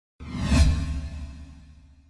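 Intro whoosh sound effect with a deep low rumble, starting suddenly and fading away over about two seconds.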